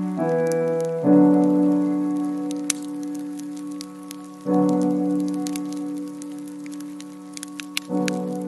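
Soft, slow piano music, a new sustained chord struck about every three to four seconds, with scattered water drips and small splashes over it.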